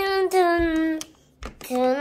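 A child singing wordless held notes: one long steady note for about a second, then after a short pause a second note that slides downward near the end. A low bump sounds in the pause.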